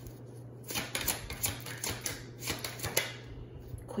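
Tarot cards being handled: a quick run of crisp clicks and flicks, starting nearly a second in and lasting about three seconds.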